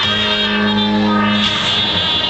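Live concert music: one low note held steady for about a second and a half, then fading.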